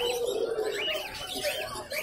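Caged lovebirds chirping in quick runs of short, high chirps, several a second, over a low steady background murmur.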